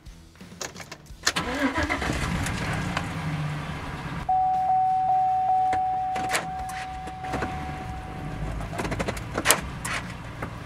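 A Chevy Silverado's 5.3L V8 cranking and catching about a second in, then idling steadily. About four seconds in, a steady dashboard warning chime sounds for a few seconds and fades. A sharp click comes near the end.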